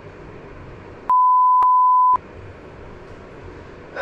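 A single steady, high electronic censor beep lasting about a second, starting about a second in, with all other sound muted beneath it; before and after it there is only faint background hiss.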